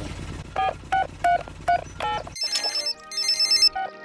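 Cartoon mobile phone being dialled: about six short keypad beeps over the low drone of the helicopter. Then, after a sudden cut, a phone rings in two short bursts of high electronic ringing.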